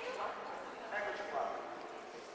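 Indistinct chatter of several children and adults talking, with no single voice standing out.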